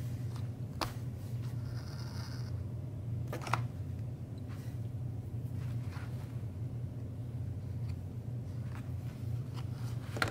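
Hand-stitching leather with a curved harness needle: thread drawn through the stitching holes with a brief zipping hiss, and a few short scrapes and ticks of the needle, over a steady low hum.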